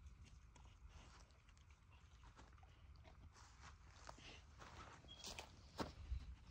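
Near silence: a faint outdoor background with scattered small clicks and taps, and one sharper tap just before the end.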